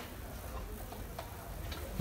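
A few faint, short ticks of a marker tip on a whiteboard as a word is finished, over quiet room hiss.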